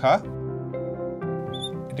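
Soft background music of held chords that change twice, with a short high squeak of a marker on a glass writing board about one and a half seconds in.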